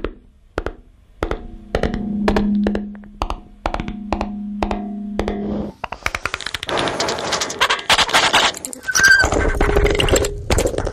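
Experimental electroacoustic sound piece: sharp clicks struck over a steady low hum, then from about six seconds in a dense, rapid crackling rattle like machine-gun fire.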